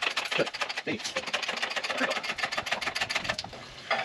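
Fast run of metallic clicks from the engine hoist's load leveler being cranked to tilt the chained engine level, with a couple of short squeaks in the first second; the clicking stops about three and a half seconds in.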